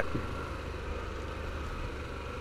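Harley-Davidson Pan America's 1250 cc V-twin engine running steadily as the motorcycle rides along a gravel road at low speed.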